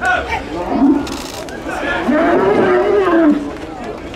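A young Camargue bull (taü) bellowing: one long call about two seconds in that rises and falls in pitch.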